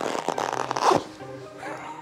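A glove being pulled on and tugged tight over the hand and wrist, a rasping rub of glove on glove that fades out about halfway through. Music plays underneath.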